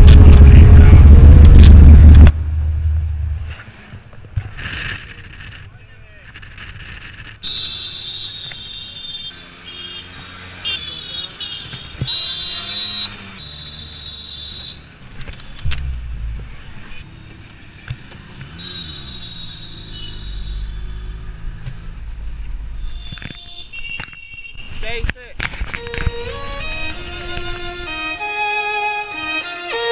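Traffic heard from inside a moving auto rickshaw (tuk tuk): a loud, distorted low rumble for the first two seconds, then quieter engine and road noise with several high, held horn tones and indistinct voices.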